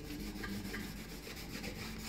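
Cloth pad rubbing beeswax into the surface of a chalk-painted cigar box: a soft, steady scrubbing of quick back-and-forth strokes.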